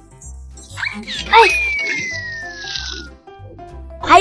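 Cartoon soundtrack: children's background music with a short loud character cry about a second in, then a long whistle sound effect falling steadily in pitch for nearly two seconds.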